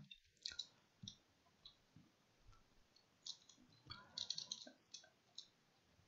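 Faint computer keyboard key presses: scattered single clicks, with a quick run of several about four seconds in.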